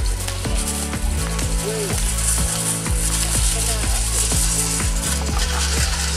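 Music with a steady beat of about two sharp strokes a second over a deep, held bass line.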